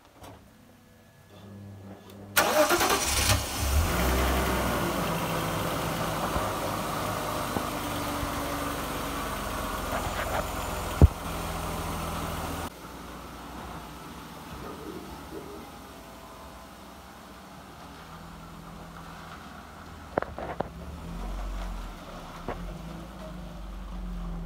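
A BMW E39 520i's straight-six engine cranks and starts about two seconds in, then idles, run to check a freshly replaced fuel filter for petrol leaks. A sharp knock comes near the middle, and the engine is heard more faintly from about thirteen seconds on.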